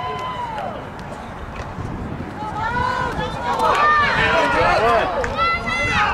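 Voices shouting and yelling outdoors from players and sidelines during a football play, louder and more crowded about halfway through as the play runs, with a few short knocks among them.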